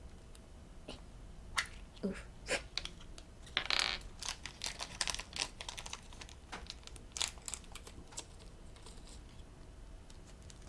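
Small plastic toy capsules clicking and snapping as they are twisted open by hand, with scattered light taps of tiny plastic charms set down on the tabletop and a short burst of handling noise about three and a half seconds in.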